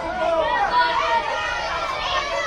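Several voices talking and calling out over one another, with no clear words, from players and people along the touchline of a youth football pitch.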